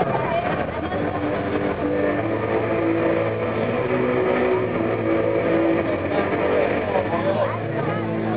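Concert crowd talking, over a loud steady drone that holds notes and steps in pitch.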